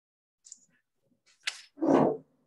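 A man's short vocal sound close to the microphone near the end, after a faint click and a brief sharp click or rustle. It is most likely a throat-clearing or a hesitation sound between sentences of a read speech.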